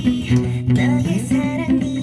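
Electric bass guitar plucked with the fingers, playing a repeated-note bass line with a few sliding notes over a backing pop track.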